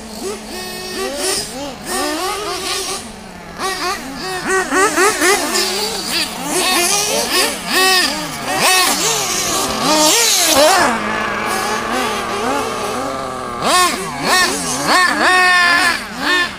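Several radio-controlled cars racing on a dirt track, their small motors revving up and down over and over in quick rising and falling whines that overlap.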